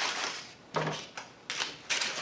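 Dry paper crinkling and rustling as a hardened papier-mâché shell over a paper bag is handled, in a few short scratchy bursts.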